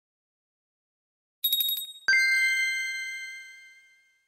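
Chime sound effect on a title transition: a brief high tinkling shimmer, then a single bright ding that rings on and fades away over about two seconds.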